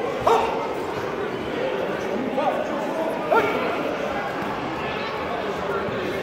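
Taekwon-do fighters' short, sharp sparring shouts (kihap), heard three times, the first and last loudest.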